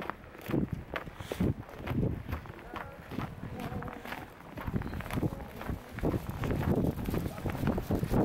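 Footsteps on snow at a steady walking pace, about two steps a second, with people talking in the background.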